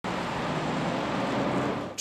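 Steady road noise from interstate traffic passing close by, a continuous hiss of tyres and engines, dropping away at the very end.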